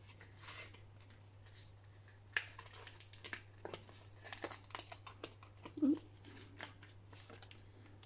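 Crinkling and rustling of a paper sticker sheet and a plastic binder pocket as a small sticker is peeled off and pressed on, with scattered light clicks and taps.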